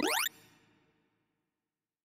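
Synthesized tones of a sorting-algorithm visualizer sweeping quickly upward in pitch during the verification pass over the finished, sorted array. The sweep cuts off about a quarter-second in and fades to silence.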